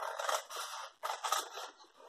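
Scissors cutting along a score line in brown cardstock: about four snips, roughly one every half second.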